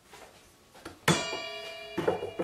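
A sharp metallic knock about a second in, which then rings on like a bell with several clear, steady tones: a steel square knocked against the saw while checking blade alignment.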